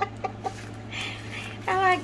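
Light handling sounds from a diamond-painting canvas and a washi tape roll: a few soft clicks in the first half second and a brief rustle about a second in, then a woman starts speaking near the end.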